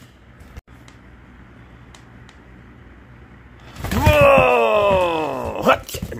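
A serval cat giving one long, loud meowing call that falls steadily in pitch, lasting about two seconds, starting a little past halfway through. Before it there are only faint room sounds with a few light ticks.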